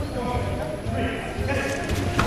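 Regular soft thuds of bare feet bouncing and stepping on foam sparring mats during taekwondo sparring, with voices shouting in a reverberant hall over them.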